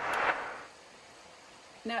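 A brief breathy hiss lasting under a second, then quiet room tone.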